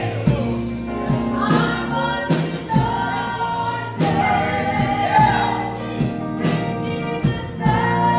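Live gospel song: a man singing lead over a church band of drums, electric guitar, bass and keyboard, with a steady drum beat.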